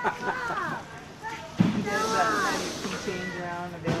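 Indistinct conversation of people talking, with a single sharp knock about one and a half seconds in.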